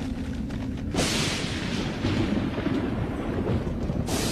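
A film soundtrack's deep rumbling, with a sudden louder rush of noise about a second in that carries on.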